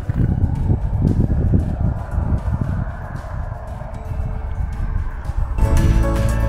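Irregular low rumbling noise outdoors, then background music with sustained notes comes in near the end.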